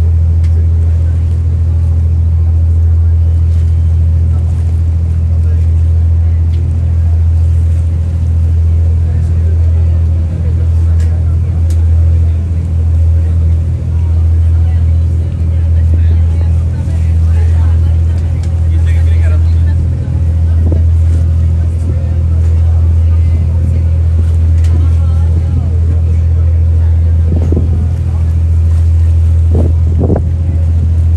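Lake ferry's engine running with a steady low drone, heard on board while under way.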